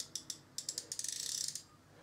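Drag of a Jaxon Saltuna 550 sea spinning reel clicking as it is tested at a light setting. A few separate clicks come first, then a rapid run of clicks lasting about a second.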